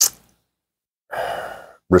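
A man sighing: one breathy exhale a little under a second long, starting about a second in and fading away. There is a brief sharp breath or mouth sound at the very start, and his speech resumes at the end.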